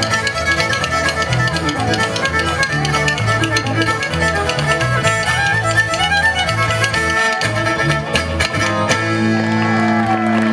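An old-time fiddle tune played live on fiddle and acoustic guitar, with wooden spoons clacking a rapid rhythm against the player's knee. About nine seconds in the clacking thins out and a held chord rings on.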